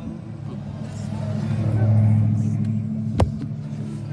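Car running as heard from inside the cabin: a steady low engine and road drone swells to a peak about halfway, then eases. A single sharp click comes about three quarters of the way in.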